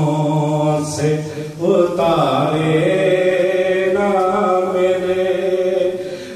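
A man chanting a Muharram lament (noha) into a microphone, his voice carried over a PA, in long drawn-out melodic phrases with a brief breath about a second and a half in.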